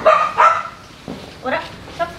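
Shiba Inu barking: two sharp barks in quick succession, then a short yip rising in pitch about a second and a half in.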